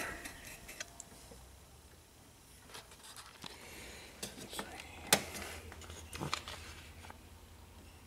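Steel drill bits clicking and rattling faintly as a hand sorts through a metal drill index in a toolbox drawer, with scattered sharper clicks, the loudest about five seconds in, over a low steady hum.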